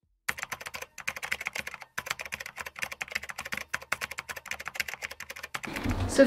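Computer-keyboard typing sound effect: a fast, continuous run of key clicks starting a moment in and stopping just before the end.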